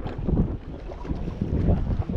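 Wind buffeting the microphone, a steady low rumble, over the wash of choppy open water around a small boat.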